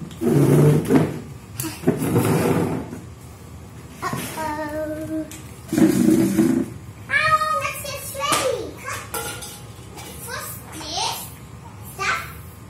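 Young children's voices, short calls and babble, while they play. In the first three seconds two loud rustling swishes, fabric being spread and pulled over a small plastic table.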